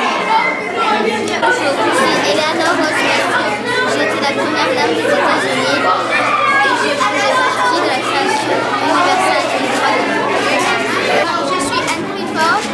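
Chatter of many overlapping voices, children's among them, carrying on steadily in a large echoing hall.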